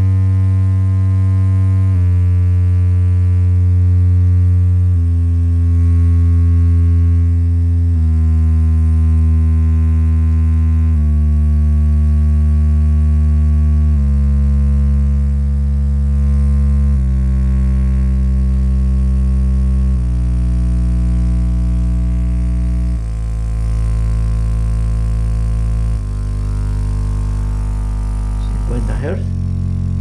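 Sine test tones of a stepped frequency sweep played through the Blitzwolf portable speaker's small 2¾-inch subwoofer. Each tone is a steady low hum with strong overtones, and it steps down in pitch about every three seconds.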